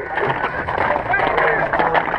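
Several voices talking and calling out at once, overlapping chatter with no one voice standing out.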